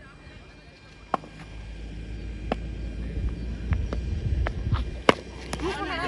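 Open-air ground ambience: a low rumble with scattered sharp clicks and faint distant voices.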